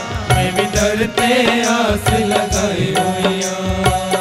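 A man singing a Hindu devotional bhajan into a microphone, with a steady drone and a regular percussion beat.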